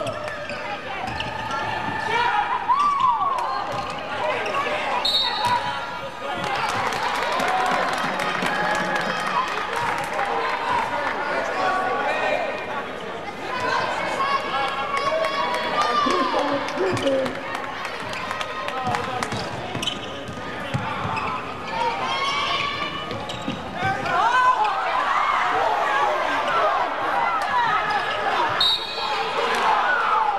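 Live basketball play on a hardwood gym floor: the ball bouncing repeatedly, short squeaks from sneakers, and shouting from players and the crowd, echoing in the hall.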